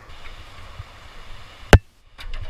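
Rushing whitewater river, faint and steady, broken near the end by a single sharp knock, after which the sound briefly drops out.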